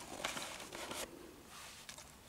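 An arrow being pulled out of a foam 3D animal target: a short run of scraping friction in the first second, then a single faint click near the end.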